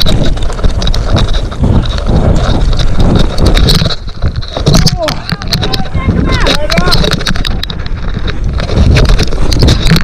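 Mountain bike descending a rough dirt trail at speed: wind buffeting the camera microphone, tyres over roots and dirt, and the bike rattling and clattering throughout. Voices call out briefly around the middle.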